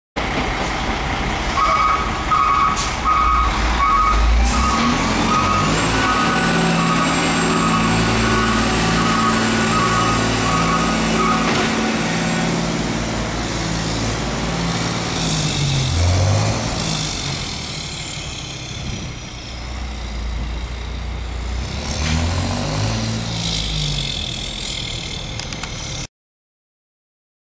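Mercedes-Benz diesel engine of a Freightliner M2 roll-off truck pulling away with a deep growl, its pitch rising and falling several times as it works up through the gears. A repeated beep sounds about once a second for roughly the first ten seconds.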